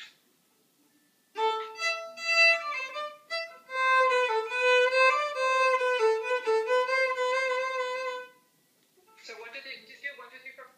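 A violin bowed through a short practice phrase, starting about a second in: separate notes first, then longer notes embellished with a trill. It stops about eight seconds in.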